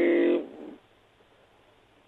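A man's voice holding a drawn-out hesitation vowel that ends less than half a second in, followed by near silence.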